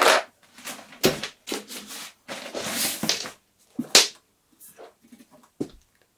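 A plastic bag rustling and crinkling in a run of short handling bursts as a stage box is pulled out of it, with one sharp click near the middle and a few faint ticks after.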